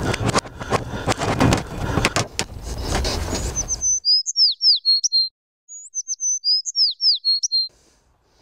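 Close handling noise, rustling with knocks, as the camera or clip-on microphone is fumbled, stopping abruptly a little before halfway. Then a clean phrase of bird song, high chirps and whistled down-slurs, is heard twice in the same form over dead silence, like an added sound effect.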